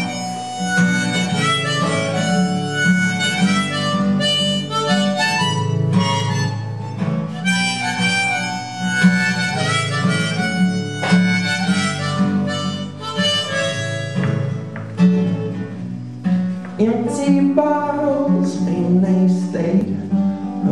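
Harmonica solo over a strummed acoustic guitar: an instrumental break between verses of a folk song.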